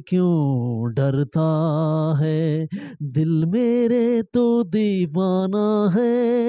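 A man singing a Hindi film song unaccompanied into a microphone, drawing out long notes that waver in pitch, in several phrases with short breaks between them.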